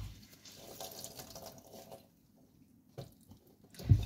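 Liquid pouring or running for about two seconds, then stopping, followed by a single light click about a second later.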